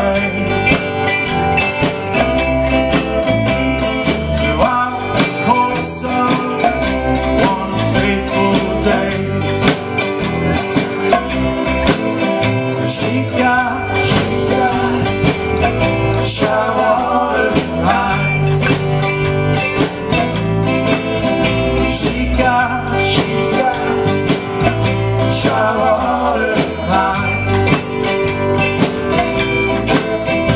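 Live band performing a song: strummed acoustic guitar and electric bass under a man's lead vocal, played continuously at a steady loud level.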